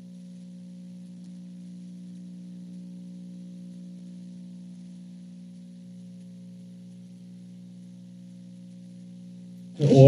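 A steady low hum made of several fixed pitches, with a faint hiss above it, holding unchanged; a man's voice cuts in right at the end.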